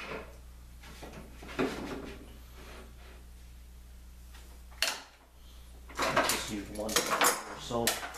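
Metal clamps clinking and clattering as they are handled on a workbench top, with a sharp knock about five seconds in and a busier run of clatter near the end as a clamp and a wooden board are set in place.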